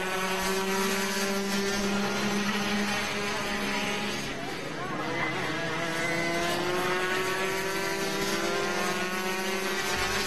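Rotax 125 cc two-stroke kart engines running at race speed as karts pass. The engine note holds, drops away briefly around the middle, then climbs steadily again as karts come close.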